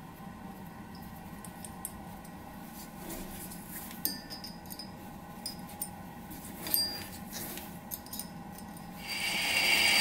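Small metallic clicks and clinks as a cast-iron flywheel and its steel split collet are handled and tightened by hand on a shaft, over a faint steady hum. Near the end the lathe starts running, and its noise rises.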